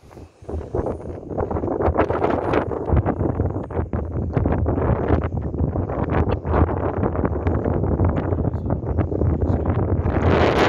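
Wind buffeting a phone's microphone: a loud, uneven rumble with gusty crackles that swells in about half a second in.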